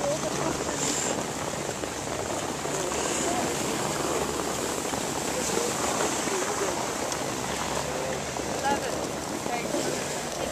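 Steady rushing noise of skiing downhill: skis sliding over snow and wind on the microphone, with faint voices of other skiers in the background.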